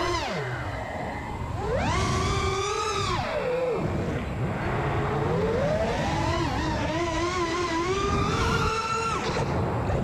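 FPV freestyle quadcopter's brushless motors whining, the pitch swinging up and down with the throttle: high and held about two to three seconds in, dipping around four seconds, then climbing and wavering high before dropping near the end.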